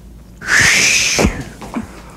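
A short hissing whoosh sound effect, about half a second in and lasting just under a second, that rises and then falls in pitch.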